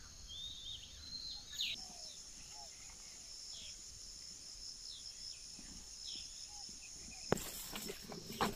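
A steady, high-pitched chorus of insects, with a few short, falling bird chirps in the first few seconds. A sharp click sounds near the end.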